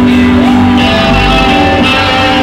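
Live indie rock band playing loud on electric guitar, bass and drums, with a shouted vocal over it.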